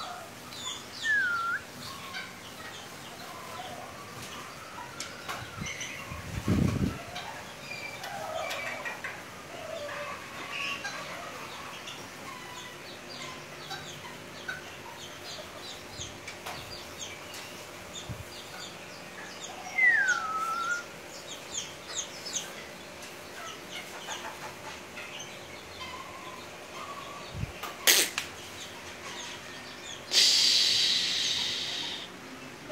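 Young serama bantam chickens peeping: scattered faint chirps, with two louder peeps that slide down in pitch, one about a second in and one about twenty seconds in. A low thump about six and a half seconds in and a sharp click near the end.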